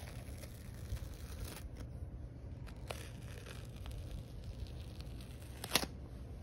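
Adhesive detox foot pad being peeled off the sole of a foot: faint crinkling and tearing of the pad's paper backing and adhesive pulling from the skin, with a few small ticks and one sharp click near the end.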